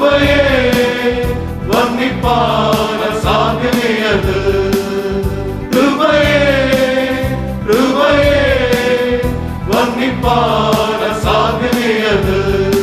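Men's choir singing a Malayalam Christian hymn in phrases of about two seconds with long held notes, over steady keyboard accompaniment.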